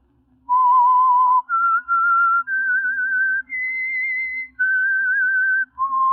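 A person whistling a slow, eerie melody of about seven long notes with a wavering vibrato, starting about half a second in: the radio mystery's signature whistled theme.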